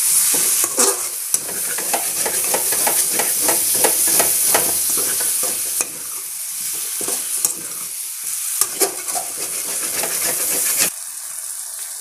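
Taro root (colocasia) pieces frying in oil in a metal kadai with a steady sizzle, while a perforated steel ladle stirs them, scraping and clicking against the pan. The ladle strokes are frequent for the first six seconds or so, then come more sparsely.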